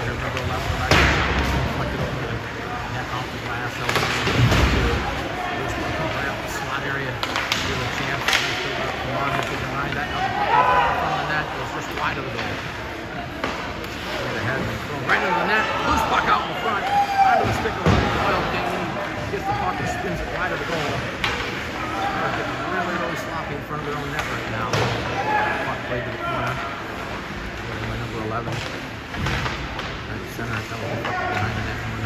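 Ice hockey play: sharp cracks and bangs of sticks and the puck striking each other and the boards, with several loud hits in the first ten seconds and another near the middle. Indistinct shouting voices carry over a steady rink noise.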